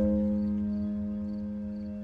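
Soft instrumental background music: a held chord, struck just before, fading slowly.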